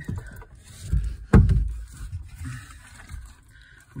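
Handling noise: a single dull thump about a second in, the loudest sound, with low rumbling just before it and faint knocks and rustles after.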